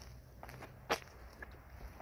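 Quiet footsteps on a hard path, with one sharp click a little under a second in.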